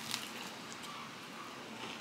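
Faint chewing on a mouthful of chicken Caesar wrap with lettuce and croutons, with a few small wet clicks near the start.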